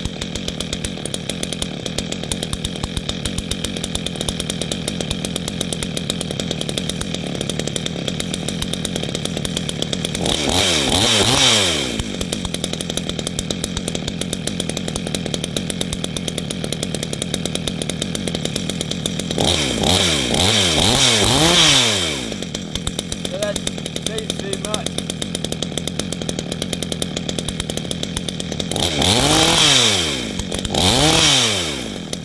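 A 62cc two-stroke chainsaw with an adjustable muffler exit, idling steadily on its first run with the modified exhaust. Three times, about ten seconds apart, it is briefly revved, each burst a few quick rises and falls in pitch.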